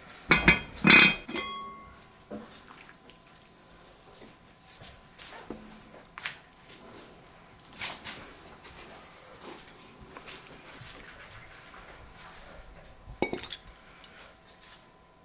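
A heavy enamelled pot with its lid set down on a table, with a couple of loud clunks and a ringing rattle of the lid about half a second to a second in. Then a ladle clinks now and then against the pot while soup is stirred and served, and a quick run of clinks near the end as the ladle meets a porcelain soup plate.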